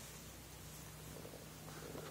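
Faint, soft grunting sounds from a seven-week-old baby, a few short ones in the second half, over a steady low hum.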